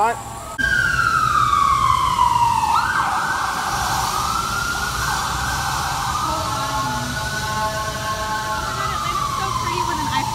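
Emergency vehicle siren starting about half a second in: a wail sliding down in pitch, then a rougher warbling stretch with steadier tones, and another downward wail near the end.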